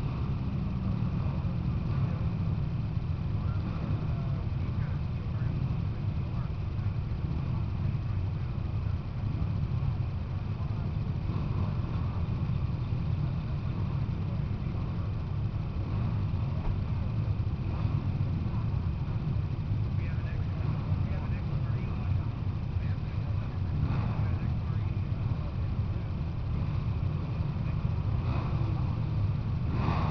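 A steady low rumble with faint distant voices.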